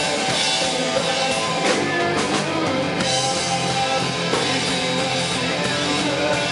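Rock band playing live: electric guitars and a drum kit, loud and continuous.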